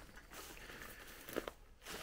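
Faint footsteps crunching through dry leaves and dead undergrowth, with a small click about one and a half seconds in.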